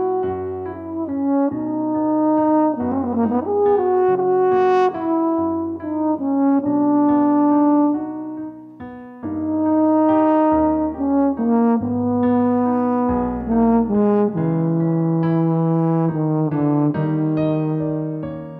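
Conn 8DS French horn playing a slow, lyrical solo melody in sustained legato phrases over a MIDI piano accompaniment, with a trill about three seconds in.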